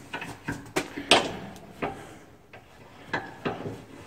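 Irregular metal clicks and knocks, about seven, the loudest about a second in, as an angle grinder's gear housing is handled and set into the jaws of a bench vise.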